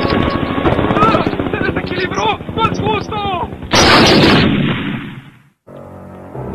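Cartoon helicopter rotor chopping, a rapid even beating, with several short swooping high tones over it. About four seconds in, a loud hissing whoosh swells up and then fades away.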